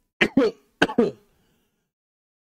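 A man coughing and clearing his throat: two short bursts, each of two quick coughs, within the first second or so. The coughing comes from a flu with a sore, irritated throat and an allergic cough.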